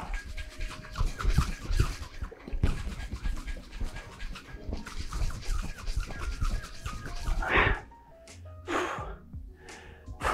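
Stainless-steel cocktail shaker shaken hard and fast with a rapid, uneven knocking rhythm, a long shake that whips the egg white and heavy cream of a Ramos Gin Fizz into foam. The shaking stops about three-quarters of the way in, followed by two heavy, out-of-breath exhalations.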